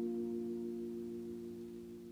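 A held chord of the background music ringing on and fading steadily away, with no new notes struck.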